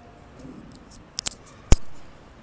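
A pause in a lecture hall broken by short sharp clicks: two close together just past a second in, then a single louder knock near the end.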